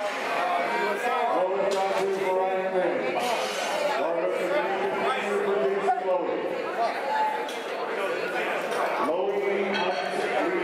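Chatter of several people talking at once in a large hall, with no single clear voice.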